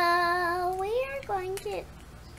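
A young girl's voice drawing out one long, steady note for about a second, gliding upward, then a few quick syllables.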